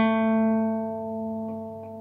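A single acoustic guitar note, a B flat, plucked just before and left ringing, slowly fading away.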